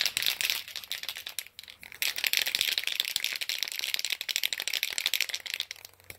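Aerosol spray paint can being shaken, its mixing ball rattling rapidly inside, ready for spraying. The shaking slackens briefly after about a second, then goes on steadily.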